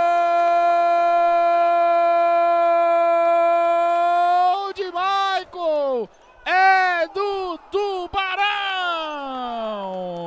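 A male Brazilian TV commentator's drawn-out goal cry, "Gol!", held loud at one steady pitch for about four and a half seconds. It breaks into a run of short shouted calls, then a long note that slides steadily down in pitch near the end.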